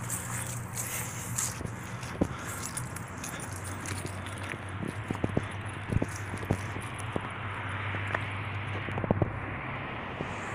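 A steady low engine hum, like traffic or an idling vehicle, that sets in a few seconds in, with a swell of passing-vehicle noise near the end and scattered light clicks and taps of handling and footsteps.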